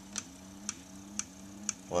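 Stargate motor turning slowly on capacitor power, ticking about twice a second over a faint low hum; the tick rate matches one tick per turn of the rotor at around 115 RPM.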